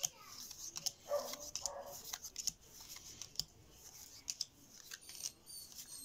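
Paper trading cards being flipped through by hand: irregular crisp clicks and slaps of card stock as each card is slid off the stack. About a second in there is a brief muffled vocal sound, and near the end there are faint short high chirps.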